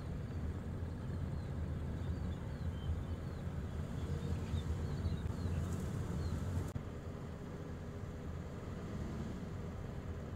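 Outdoor ambience: a steady low rumble, with faint, brief high chirps of small birds scattered through the first two-thirds; the background changes abruptly about seven seconds in.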